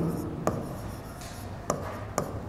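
Marker pen writing on a board: the tip taps sharply against the surface twice and makes a short scratchy stroke between the taps as letters are written.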